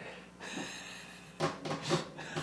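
Quiet, breathy laughter, with a few short louder bursts near the end.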